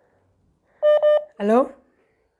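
Two short, identical electronic beeps of a phone call, close together, followed at once by a voice saying "hello" with a rising pitch.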